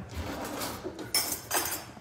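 Metal kitchen utensils clinking and clattering, with the sharpest burst of clinks just after a second in, as a knife is picked up to cut into the baked crescent ring.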